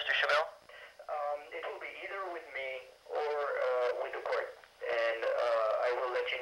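Only speech: a person talking over a telephone line, the voice thin and narrow-band, with brief pauses between phrases.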